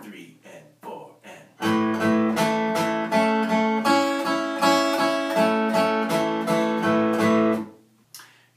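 Acoustic guitar flatpicked with a pick: a steady, evenly spaced run of picked notes, a little under three a second, which begins about a second and a half in. The last notes ring and fade just before the end.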